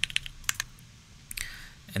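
A few separate keystrokes clicking on a computer keyboard as a number is typed into a value field.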